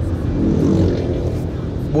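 Nissan Terra's 2.5-litre turbodiesel engine heard from inside the cabin while driving, a steady low rumble mixed with road noise. The diesel comes through into the cabin a bit noisy, with a typical diesel character.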